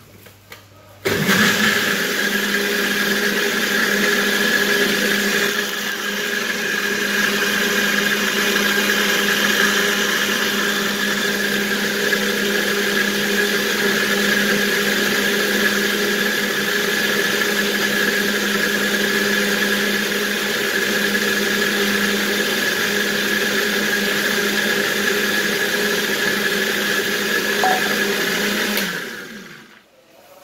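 Countertop blender running steadily with a constant pitch, puréeing boiled orange peel with olive oil. It switches on about a second in and winds down just before the end.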